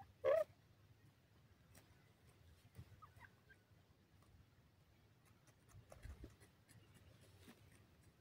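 Grey francolins foraging at close range: one short, loud call from a bird about a third of a second in, then faint scattered scratching and pecking clicks in dry soil, with a few soft chirps around three seconds in.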